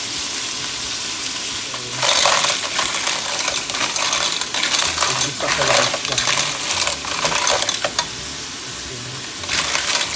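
Clams in their shells clattering against each other and the pot as they are stirred with a wooden spatula, over a sizzling pan. A steady sizzle for the first two seconds, then repeated rattling clinks of shells, easing off briefly before more clatter near the end.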